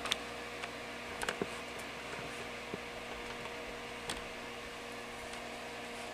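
Light clicks and taps of multimeter test probes being placed against a removed space-heater element, over a steady electrical hum.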